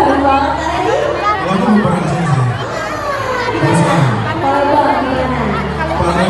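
Crowd chatter in a large hall, with voices over a PA system and some music mixed in.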